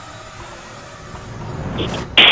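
A steady low engine drone, with a low rumble building near the end.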